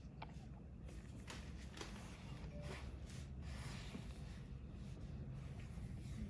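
Faint room tone with a steady low hum and a few soft clicks and brushing sounds.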